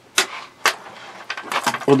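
A few sharp clicks and light knocks of small hard objects being handled on a cluttered workbench, the two loudest in the first second, then fainter ticks.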